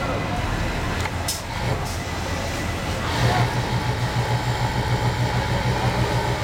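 Industrial interlock (coverstitch) sewing machine running at speed, stitching a T-shirt armhole. From about halfway in, its hum, with a fast even pulse and a steady whine above it, rises over the factory din.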